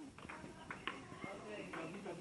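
A table tennis ball clicking a few times off paddles and the table, under untranscribed chatter of several voices.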